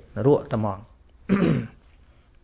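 A man's voice: a short spoken phrase, then a brief throat clearing about one and a half seconds in.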